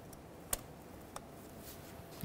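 Two faint, sharp plastic clicks, about half a second and just over a second in, from the locking tab on the knock sensor's electrical connector being pushed shut.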